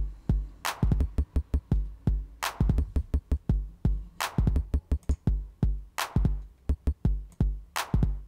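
Looping electronic drum pattern from TidalCycles samples: bass drum thumps with clap and snare hits and rapid glitchy clicks. A loud crack comes about every 1.8 seconds.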